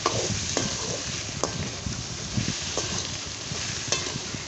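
Sliced ivy gourd sizzling steadily in oil in a wok while a spatula stirs it, with a few sharp scrapes and taps of the spatula against the pan.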